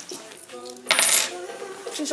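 Coins clinking onto a stainless steel checkout counter in one short, loud, bright jingle about a second in.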